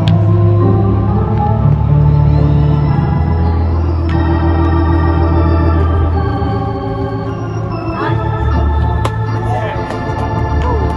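Organ music: sustained chords in a Hammond-organ sound that change every few seconds.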